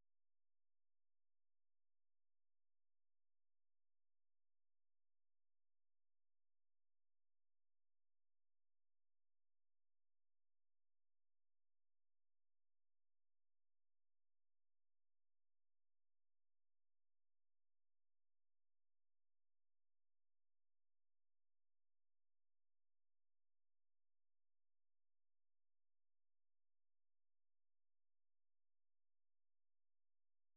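Silence: the broadcast's audio is blanked out during a commercial break.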